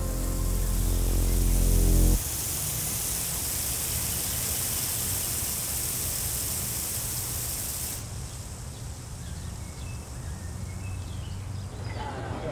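A sustained music chord swells and cuts off abruptly about two seconds in. It is followed by a steady outdoor hiss of water spraying from a lawn sprinkler, which turns softer about eight seconds in.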